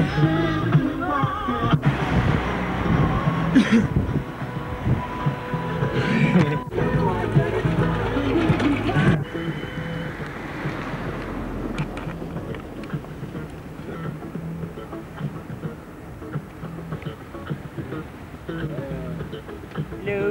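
Music with some voices on a home-video soundtrack, cut off abruptly several times by tape edits in the first nine seconds. After that it drops to a quieter, steady low hum and hiss of blank videotape, with faint ticks.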